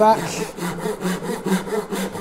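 Handsaw cutting into oak with short, quick strokes, about four a second, nibbling the kerf in at the back corner of the board to start the cut.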